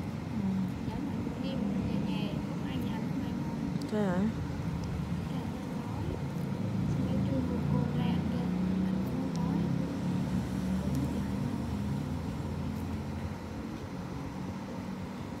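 Indistinct background voices over a low, steady rumble like street traffic, with a brief wavering tone about four seconds in.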